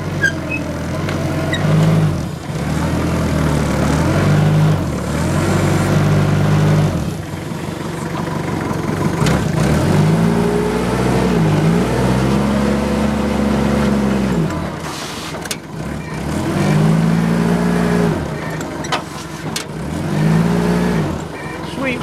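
Forklift engine revving up and dropping back about six times, one rise held for several seconds in the middle, as the hydraulic mast is worked up and down.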